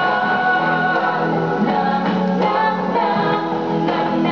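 Male and female voices singing a duet together over backing music, holding long notes.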